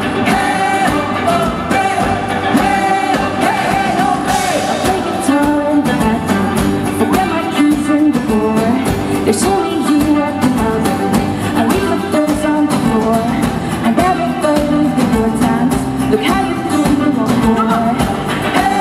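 Live band performing a pop song: a woman and a man singing over acoustic guitar, electric guitar and drums with a steady beat.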